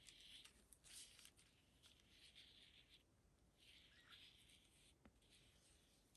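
Near silence, with a few faint, soft scratching strokes of a water brush pen's tip drawn across a thin paper napkin, wetting a line so the napkin can be torn.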